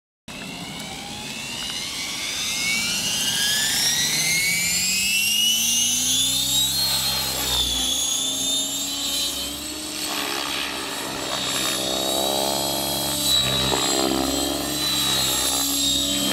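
Align T-REX 700E electric RC helicopter in flight: the whine of its electric motor and the sound of its rotor blades. The whine rises steadily in pitch over about the first seven seconds, then holds steady.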